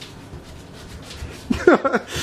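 Quiet room noise, then about one and a half seconds in a short, loud burst of wordless voice sounds with sliding pitch.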